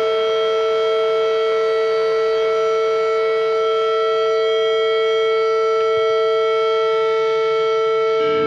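Steady electric drone from the band's amplified gear: several pitches held together without any change in pitch or level.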